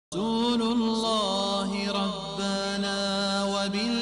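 Opening of an Arabic nasheed about the Prophet Muhammad: voices holding long sung notes that slide slightly in pitch, before any words are sung. The sound starts abruptly at the very start.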